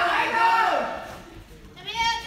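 A drawn-out shout from the crowd, rising then falling in pitch, cheering on a fighter during a karate bout.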